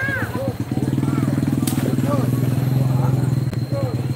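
A small engine running steadily at an even pitch, briefly dipping about half a second in, under the chatter of a crowd.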